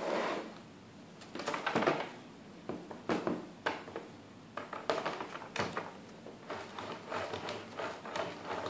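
Plastic filament spool being handled and turned on its side holder on a 3D printer's clear plastic case: irregular knocks, clicks and scrapes of plastic on plastic.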